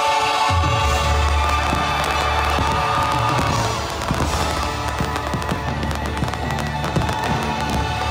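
Aerial fireworks launching and bursting, with a thick run of rapid crackling pops from about the middle onward, over loud show music played through park speakers.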